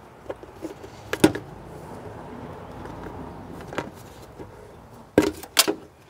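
Clicks and knocks of hands working a hose clip and pulling the coolant pipe off a plastic coolant expansion tank. A few sharp clicks, the loudest about a second in and a pair near the end, over a faint steady background noise.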